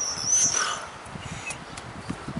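A brief high animal call that rises and falls, in the first second.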